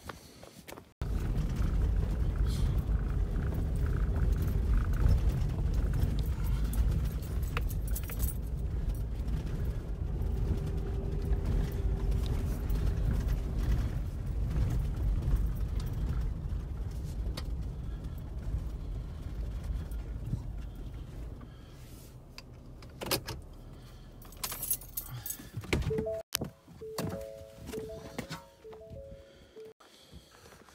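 Ford pickup truck driving slowly over a gravel and dirt track, heard from inside the cab as a steady low rumble that dies down about two-thirds of the way through. Then come a few knocks, and the truck's two-note electronic chime repeats.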